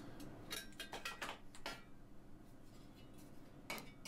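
Light metallic clinks and scrapes of a sheet-steel strip being worked into place with pliers against a tack-welded steel sculpture: a few small clicks in the first second and a half, then quiet, and another short clink near the end.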